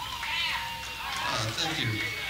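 Voices from a club audience between songs: whoops and yells, with one rising-and-falling yell about half a second in.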